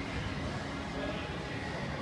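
Steady indoor background noise of a busy showroom, with faint, indistinct voices.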